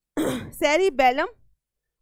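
A woman clears her throat once, then says a couple of short words.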